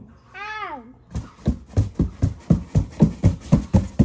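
A cat meows once, a short call that rises and then falls, from inside a closed cardboard box. Then a hand taps on the box's cardboard side in a quick, even rhythm, about four taps a second.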